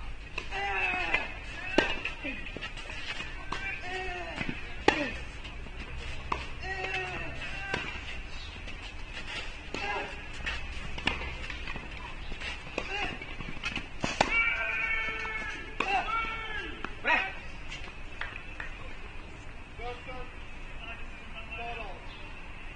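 Sharp knocks of a tennis ball being struck, spaced a second or more apart, with voices rising and falling in pitch between them.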